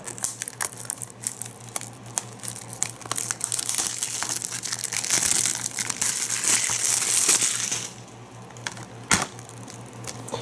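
Plastic shrink-wrap on a Blu-ray case crinkling as it is picked at and peeled off, loudest through the middle few seconds. Near the end comes one sharp click as the plastic case is snapped open.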